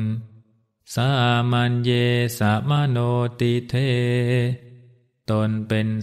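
A male Buddhist monk chanting one line of Pali verse in a low voice, with long held and wavering notes. After a short pause near the end, his spoken Thai translation begins.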